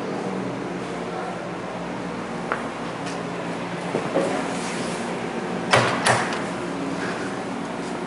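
Two sharp clacks about half a second apart, a little past the middle: the latch of a shaved-handle car door, worked by an electric door popper, releasing and the door coming open. A steady low hum underneath.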